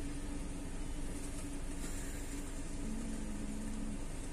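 Car engine idling, heard from inside the cabin as a steady low hum, with a short lower tone joining in near the end.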